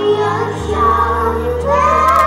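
A group of young children singing together into handheld microphones over a recorded backing track with a steady bass line.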